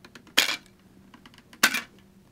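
Two sharp plastic clicks about a second and a quarter apart, with faint ticks between, from the shield mounting mechanism of an Arai Defiant-X motorcycle helmet being worked by hand.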